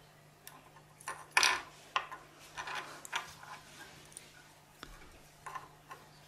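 3D-printed plastic owl figures being handled and set down on the glass Ultrabase print bed: a scattered series of light clicks and taps, the loudest about a second and a half in.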